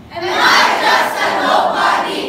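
A speech choir of many young voices chanting a line loudly in unison. It starts sharply just after the beginning and fades near the end.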